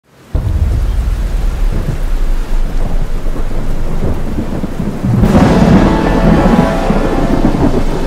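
Thunderstorm sound effect: steady rain with rolling thunder. The thunder swells louder about five seconds in.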